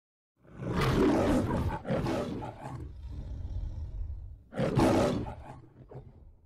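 Lion roaring in the Metro-Goldwyn-Mayer studio logo: two roars in quick succession starting about half a second in, a low rumbling growl, then a third roar near the end that fades away.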